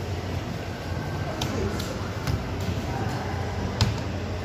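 A steady low hum with a few sharp clicks and faint voices in the background.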